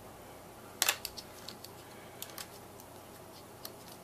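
Small handling clicks from a battery charger and an 18350 lithium-ion battery being fitted into it. One sharp click comes about a second in, followed by a few lighter, scattered ticks.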